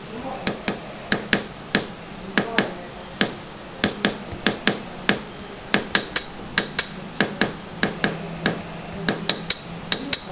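Arix-303 matrix sequencer app on an iPad playing a looped pattern of a single short percussive sample: sharp clicky hits a few times a second. From about six seconds in the pattern gets busier, with brighter, higher-pitched hits.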